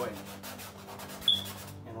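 Paintbrush bristles scrubbing over canvas in quick, repeated strokes as oil paint is worked in, with a brief high squeak a little past halfway.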